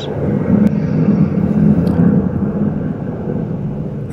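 Airplane flying overhead, a steady drone picked up by the video-call microphone.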